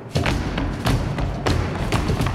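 Dancers' feet stamping on a wooden floor in flamenco-style footwork, irregular thumps about three to four a second, with music underneath.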